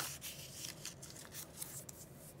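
Paper scraps being handled and slid across a craft mat: faint rustling and rubbing, with a sharp click at the start.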